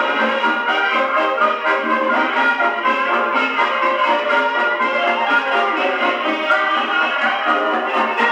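1926 Duophone Junior Table Grand acoustic gramophone with a double soundbox playing a 1925 Columbia 78 rpm record of hot 1920s dance-band music with brass. The sound is steady and has almost no deep bass, as is typical of acoustic horn playback.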